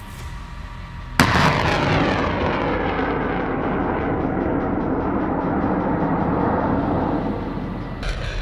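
HIMARS rocket launcher firing a rocket. A sudden loud blast comes about a second in, then the rocket motor's long roar, which slowly falls in pitch and fades as the rocket flies off.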